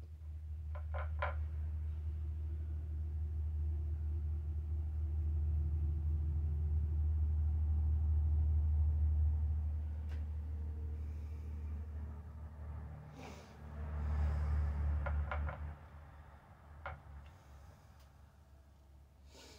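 A low rumble that swells over the first half, dips, rises again briefly near the end and then fades, with a few light clicks and taps from brushes being handled on a palette.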